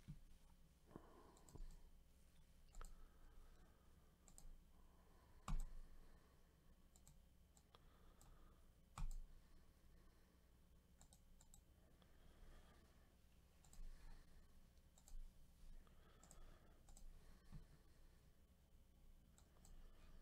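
Near silence broken by scattered faint clicks of a computer mouse and keyboard, the two loudest about five and nine seconds in, over a faint steady hum.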